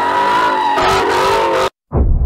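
Ford Mustang spinning donuts, its tyres squealing in a wavering pitch over the engine revving; the sound cuts off suddenly near the end.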